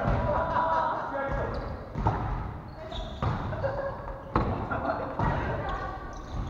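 A volleyball struck by players' hands four times, about a second apart, as a rally gets going, with voices in a large echoing gym.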